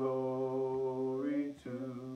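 A man's voice singing a hymn unaccompanied, holding one long steady note for about a second and a half, then breaking off and starting a shorter note near the end.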